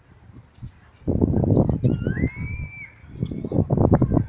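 A person laughing close to the microphone in two bursts, about a second in and again near the end. Between them a short high squeal rises and then holds in the background.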